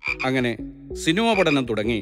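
A man's voice speaking in short phrases with brief pauses.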